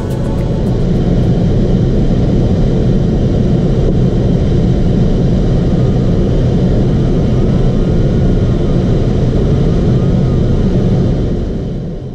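Steady, loud rushing of airflow around the canopy of an unpowered Ka6-CR glider in flight, heard from inside the cockpit. It fades out near the end.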